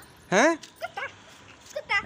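A single short vocal call rising in pitch, about a third of a second in, followed by a few faint brief vocal sounds.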